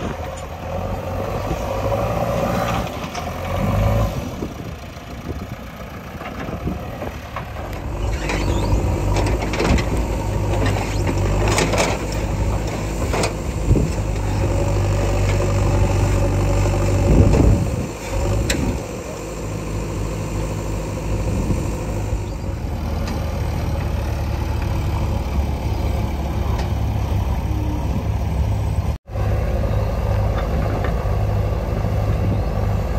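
JCB 3DX backhoe loader's diesel engine running under load with a steady low drone. A few sharp clanks and knocks from the working machine come through in the middle of the clip.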